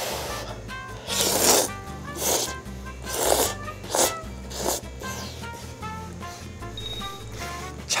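A person slurping instant ramyeon noodles from a bowl, about five quick noisy slurps in the first five seconds, over soft background music.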